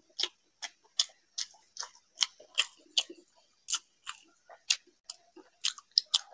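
A man chewing a curry meal with his mouth open, making wet, smacking mouth clicks about two to three a second.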